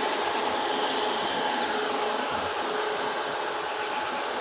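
A steady, even whirring noise with a faint hum running through it.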